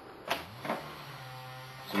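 A man's voice holding a flat, hesitant "mmm" for about a second, after two short soft sounds.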